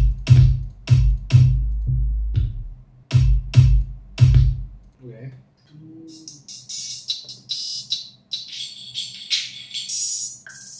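Electronic drums playing back from music software: deep bass kick hits with sharp percussive hits for about the first five seconds, then hissing cymbal and noise swells through the rest.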